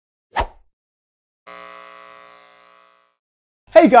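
Logo-sting sound effects: a short whooshing thump about half a second in, then a ringing tone of many pitches that fades out over about a second and a half. A man's voice starts speaking right at the end.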